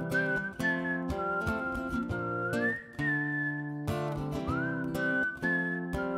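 A whistled melody of clear high notes that slide up and hold, several times over, played over a rhythmically strummed acoustic guitar and an electro-pop backing.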